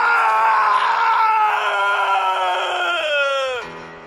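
A long scream from one voice, held at a slowly sinking pitch, then breaking downward and cutting off about three and a half seconds in, over steady background music.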